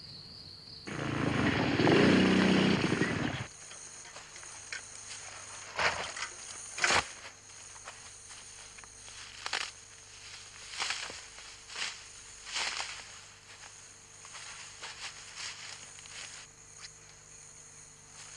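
Footsteps and rustling through dry brush and grass, with scattered short cracks of snapping twigs, over a faint steady high insect chirring. About a second in, a loud dense sound lasts roughly two and a half seconds and then stops.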